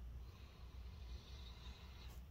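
A faint, long sniff through the nose, a person smelling the opened laptop for a burning smell.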